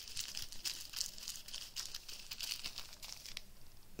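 Small clear plastic zip bags of diamond-painting drills crinkling as they are handled, a rapid run of crackles that dies down near the end.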